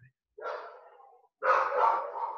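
A dog barking: two short barks about a second apart, each starting sharply and trailing off.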